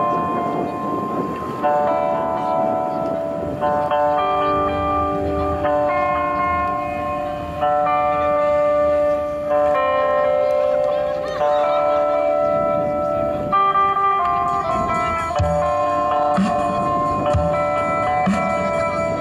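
A live rock band's song intro: electric guitar chords ringing out and changing about every two seconds, with a few low drum thumps coming in near the end.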